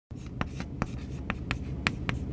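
Chalk writing on a blackboard: a quick, irregular run of sharp taps and short scratches as lettering is chalked on.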